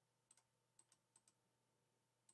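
Near silence, with a few very faint computer clicks in the first second or so.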